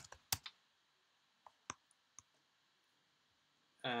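A few computer keyboard keystrokes: two sharp clicks in the first half second, then three faint ones about one and a half to two and a half seconds in.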